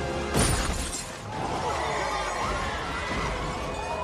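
Film soundtrack: a sudden crash with a shattering sound about a third of a second in, over tense dramatic music that carries on afterwards.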